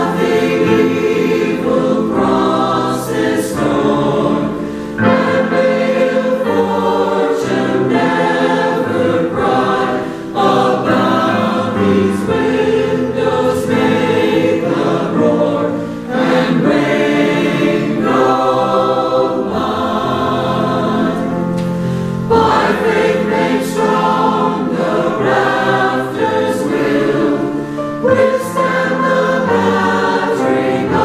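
Mixed choir of men's and women's voices singing together in sustained phrases, with a short breath between phrases about every five to six seconds.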